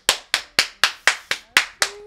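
One person clapping their hands in a steady rhythm, about four claps a second, eight or so claps that stop near the end.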